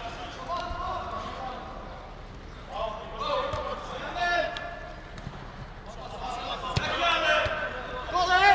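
Men shouting and calling out across an indoor five-a-side football pitch, with a few sharp thuds of the football, the sharpest about seven seconds in.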